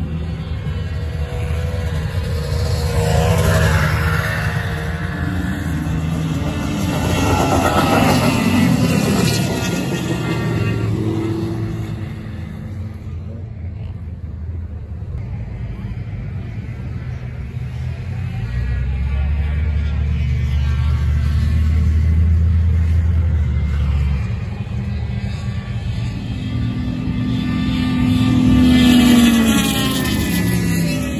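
Racing snowmobiles and other ice-race machines passing close by one after another. Each engine note rises and falls as it goes past, with the loudest passes about 3–4 s in, 7–9 s in, and near the end, where a snowmobile goes by.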